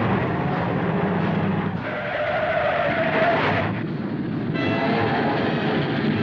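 Cartoon sound effects of a speeding car, with a tyre screech held from about two seconds in for nearly two seconds, then the noise of a train running at speed. Orchestral music comes in near the end.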